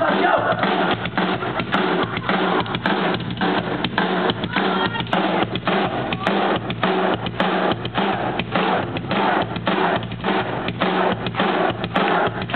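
Live rock band playing loud, with the drum kit out front: a fast, steady hammering of kick and snare, several beats a second, over the rest of the band.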